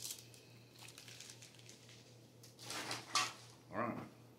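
Quiet kitchen room tone with a steady low electrical hum, a faint click right at the start, and a brief murmur of voice or handling noise about three seconds in, before speech resumes at the end.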